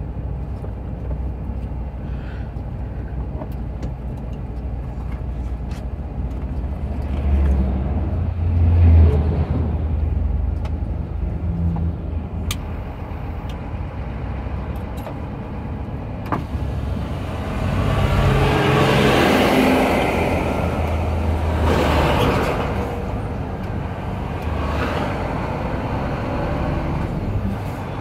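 A truck's diesel engine running steadily in a slow downhill crawl, heard from inside the cab, with road noise. It swells louder about a third of the way in, and again for several seconds past the middle as oncoming vehicles pass.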